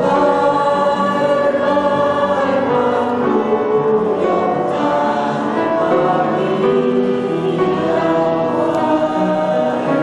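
A choir of women's and men's voices singing together, holding long sustained notes.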